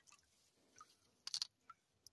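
Mostly near silence, with a few faint wet clicks and small splashes of hands moving in shallow lake water. The loudest pair comes a little past halfway.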